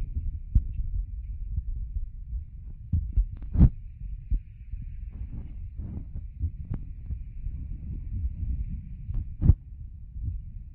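Wind buffeting a phone's microphone as a low, steady rumble, broken by a few irregular soft thumps from walking and handling the phone.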